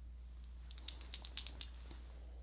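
A quick run of about ten faint, small clicks lasting about a second, over a steady low electrical hum.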